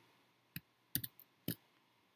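A few sharp clicks of a computer mouse, roughly half a second apart, two of them close together near the middle.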